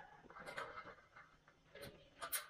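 Faint scraping and a few light knocks from a galvanized steel C-purlin being lifted upright, with a faint metallic ring.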